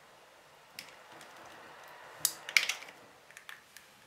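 Metal crocodile clips clicking and rattling against the terminals of an 18 V drill battery pack as they are connected, with a louder pair of clicks about halfway through. The leads are on with reversed polarity, which trips the power supply's short-circuit protection.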